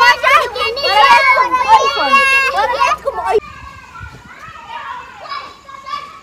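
A group of children's voices, loud and close, calling out and talking over one another. About three and a half seconds in it cuts off abruptly to fainter children's voices further away.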